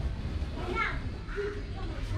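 Children's voices playing and calling in the background, with one short high call about a second in, over a steady low rumble on the microphone.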